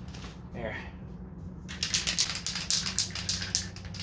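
Aerosol can of primer being shaken, its mixing ball rattling in quick clicks that start a little under two seconds in.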